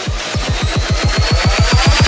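Electronic dance music build-up: a roll of deep drum hits that speeds up, with a high tone slowly rising in pitch above it, getting louder.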